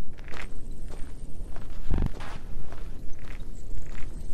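Footsteps of a person walking in shoes, irregular knocks about every half second with a heavier thud about two seconds in, over a steady low rumble.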